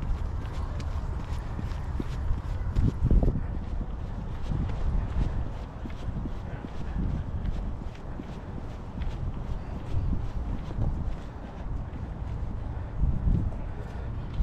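Footsteps of a person running on a paved path, a quick, even beat of about three steps a second over a low rumble.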